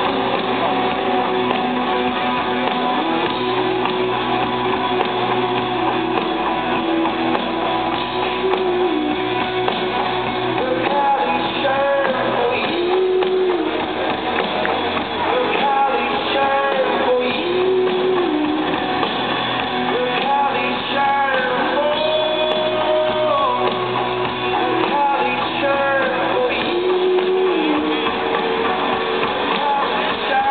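A live rock band plays with strummed guitar and a sung melody over it, heard from within the concert crowd.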